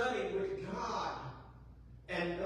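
Speech only: a man preaching, one phrase that trails off about halfway through.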